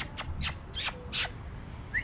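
A dog trainer's verbal prompts, non-word mouth noises to call a dog off a distraction: a couple of quick clicks, then three short hissing bursts about 0.4 s apart, and a brief rising squeak near the end.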